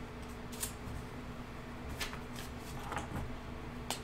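Trading cards being handled and flipped through: a few short, faint rustles and clicks of card stock, over a low steady hum.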